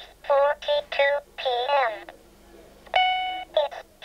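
Ross talking alarm clock going off: its synthesized electronic voice speaks a short phrase, a single steady beep sounds about three seconds in, and the voice starts again, a repeating alarm cycle.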